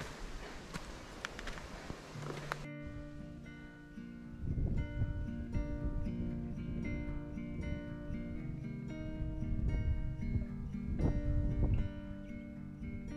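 Background music on acoustic guitar, plucked and strummed, cuts in suddenly about three seconds in, with a bass line joining a little later. Before it comes a short stretch of outdoor trail sound with a few footsteps.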